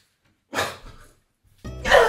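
A short shouted exclamation about half a second in, then background music starting abruptly near the end.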